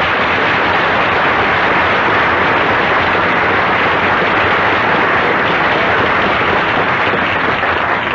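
Studio audience applauding steadily, heard on an old radio broadcast recording.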